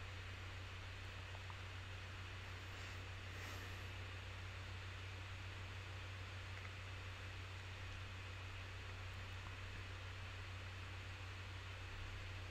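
Faint, steady low hum with an even hiss: the recording's background noise and room tone, with no distinct event.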